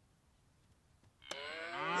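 A small child's voice imitating a cow with a long, drawn-out "moo". It starts after about a second of near silence.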